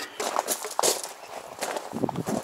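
Irregular small knocks and scrapes of handling: the metal lid of a tin of builder's bog filler coming off and the filler being scooped out and worked on a board with a putty knife.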